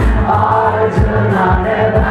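Live music: a man vocalising into a microphone through cupped hands, deep kick-like thumps about twice a second, with several voices singing over it.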